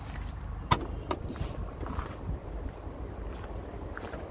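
Tailgate of a Mercedes-Benz C-Class estate being opened: a sharp latch click under a second in, a smaller click just after, then quieter movement as it lifts, over a steady low rumble.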